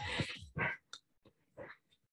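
A woman breathing hard during exercise: one long breath out, then a few shorter, fainter breaths.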